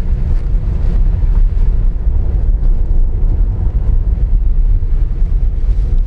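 Steady low rumble of a small Honda car driving uphill on a mountain road, heard from inside the cabin: engine and tyre noise with wind buffeting the microphone.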